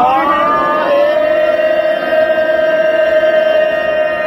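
A long ceremonial horn (narsingha) is blown in one sustained note. The pitch bends upward over about the first second, then holds steady.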